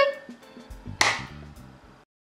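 Funk background music playing quietly, with one sharp clap-like hit about a second in. The sound cuts off suddenly at the end.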